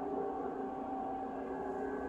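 Horn of an approaching Amtrak train sounding one long, steady multi-note chord.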